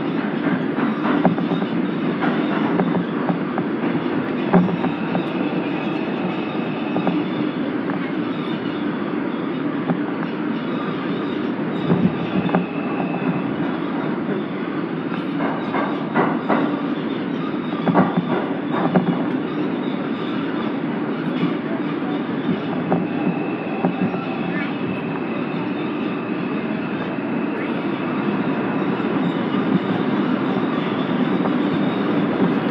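Bombardier R142 subway train running through a tunnel: a steady rumble with scattered sharp clacks over the rails. A thin high squeal comes and goes several times, longest near the end.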